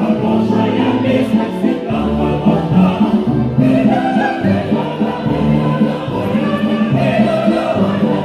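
Choir singing over musical accompaniment, loud and continuous.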